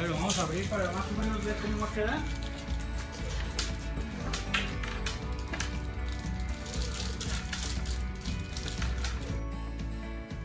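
Background music with held tones and a regular beat; a man's voice is heard briefly at the start.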